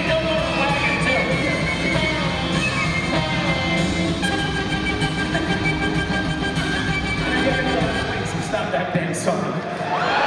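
Live band music with held notes over a full bass end; the bass drops away about eight and a half seconds in.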